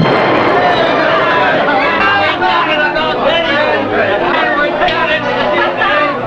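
Submarine crew cheering and talking excitedly over one another, several men's voices at once, celebrating torpedo hits on enemy ships.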